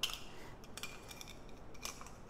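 Light clicks of small hard plastic parts as a clear plastic bauble ornament holding LEGO pieces is handled and opened, with a sharper click at the start and a few more scattered through.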